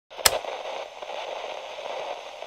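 Sound effect of crackling static for a glitch transition: a sharp click about a quarter second in, then a steady crackling hiss.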